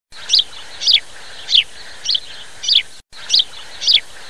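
A bird chirping over and over, a short falling note about every 0.6 seconds, over a steady background hiss. It cuts out for a moment about three seconds in, then carries on.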